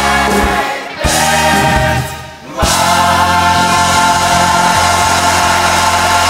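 Musical theatre ensemble singing together over a band, with a short break and then a long held chord from about two and a half seconds in.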